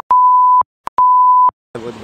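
Censor bleep: a steady, high, pure 1 kHz tone sounding twice, each beep about half a second long, the first just after the start and the second about a second in, with dead silence between. It blanks out a swear word.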